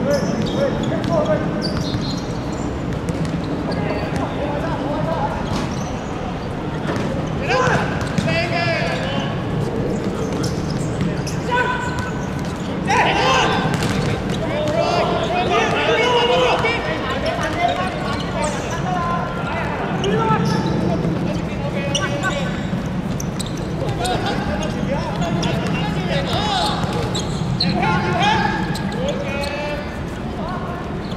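Footballers shouting and calling to each other during play, with scattered thuds of the ball being kicked and bouncing on the hard court. A steady low hum runs underneath.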